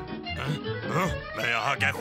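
Cartoon character's wordless vocal noises, sliding up and down in pitch, over background music.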